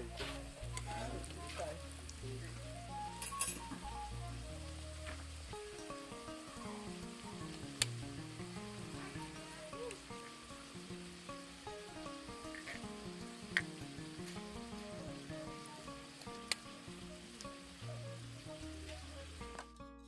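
Hot oil sizzling steadily under a potato chapati frying in a flat pan, with a few sharp clicks about eight, thirteen and sixteen seconds in.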